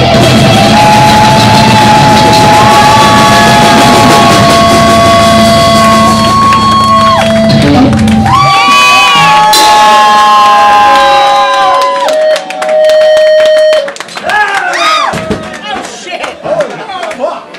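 Live rock band ending a song in a wash of guitar feedback: long held whining tones that bend in pitch over the full band. The drums and bass drop out about halfway, leaving the feedback tones, then the crowd shouts and whoops near the end.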